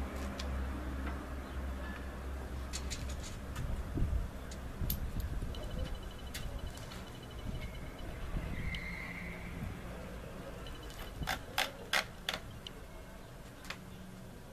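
Sharp metal clicks from a shotgun being handled after cleaning and oiling: a few light clicks early, then four loud clicks close together about eleven to twelve seconds in, over a faint low hum.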